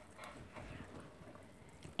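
Faint, irregular sounds of a spatula stirring thick batter in a glass mixing bowl.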